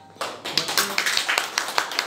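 A small group of people clapping their hands, breaking out a moment in as a quick run of irregular claps.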